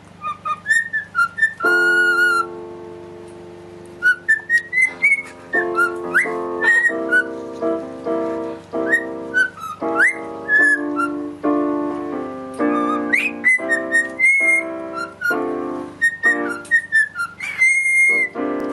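A cockatiel whistling a tune along with an electronic keyboard being played: the bird's short, high whistled notes, some with quick upward slides, sit over the keyboard's chords.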